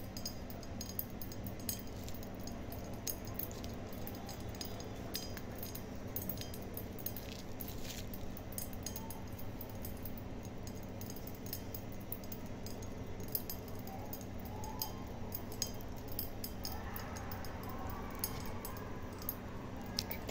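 Pop Rocks popping candy crackling in a mouth: a scatter of small, sharp, irregular pops and clicks, like tiny firecrackers.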